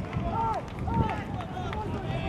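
Men shouting short calls on a football pitch, two loud shouts in quick succession near the start, over continuous open-air stadium noise.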